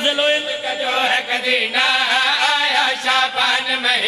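A man chanting an Urdu devotional qasida in drawn-out, wavering notes.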